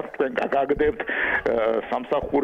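Speech only: a person talking in Georgian.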